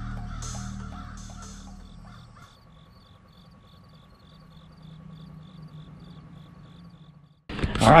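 Intro music with a regular ticking beat fading out over the first two seconds or so, followed by a faint run of short high chirps repeating about three to four times a second. A man's voice starts just before the end.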